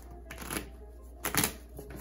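Tarot deck being shuffled by hand: a soft papery rustle of cards, with a brief louder burst of card noise about one and a half seconds in.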